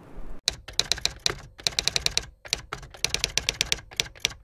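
Typing sound effect: rapid keystroke clicks, about eight to ten a second, in short runs broken by brief pauses, setting in shortly after the start.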